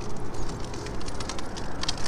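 Pedal-powered drift trike rolling over a paved path: a steady rumble of the wheels on the pavement, with scattered small clicks and rattles.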